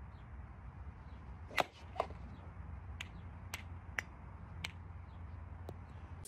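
Sharp cracks of golf clubs striking balls on a driving range, about seven scattered a second or so apart. The loudest comes about a second and a half in and the last just before the end, over a low steady background rumble.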